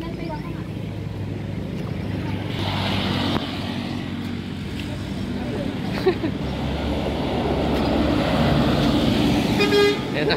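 A motor vehicle running on the adjacent road, its engine and tyre noise growing steadily louder as it approaches, with a brief horn toot near the end.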